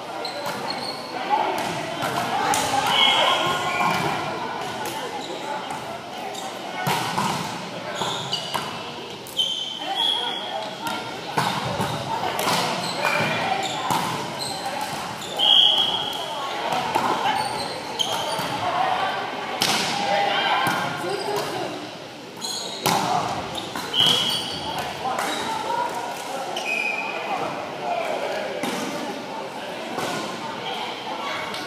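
Indoor volleyball play on a hardwood gym court: repeated sharp hits of the ball and short high squeaks of shoes on the floor, echoing in a large hall, over background voices.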